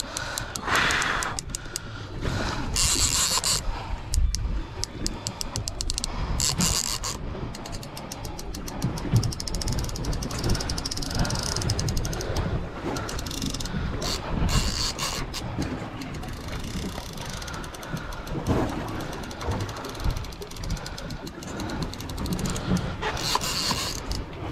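Fishing reel clicking in runs of rapid ratchet-like clicks while under the load of a hooked sand tiger shark, with steady low rumble from the open water underneath.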